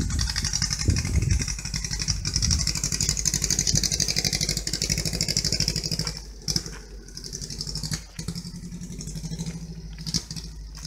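VW Beetle's air-cooled flat-four engine running as the car moves away, its pulsing drone fading into the distance. A couple of sharp knocks sound in the second half.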